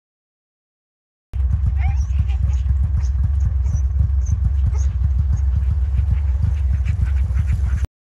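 A team of harnessed Alaskan huskies yipping and whining eagerly over a heavy low rumble. The sound cuts in abruptly about a second in and cuts off just before the end.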